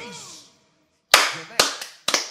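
Two sharp hand claps about half a second apart, the first the louder, after a moment of silence.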